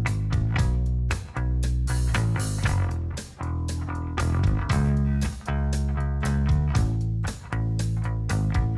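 Live punk rock band playing an instrumental passage: an electric bass riff with drums. The band cuts out briefly about every two seconds in a stop-start pattern.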